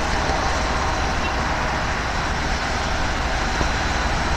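Steady rumble of idling vehicle engines mixed with road traffic noise, with no distinct events.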